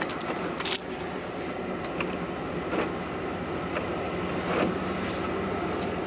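Steady engine and road noise inside a car's cabin, with a low hum and a few light knocks, the loudest under a second in.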